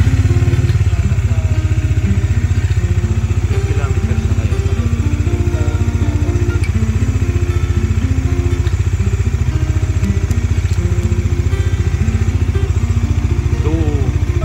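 Bajaj Dominar 400's single-cylinder engine idling steadily with an even low pulse, just after being started.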